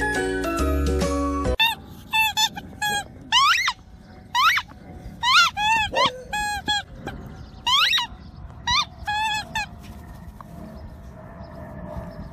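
Beagle puppies yipping and whining as they play, about a dozen short high-pitched cries rising and falling in pitch, ending about ten seconds in. Upbeat background music plays for the first second and a half, then stops abruptly.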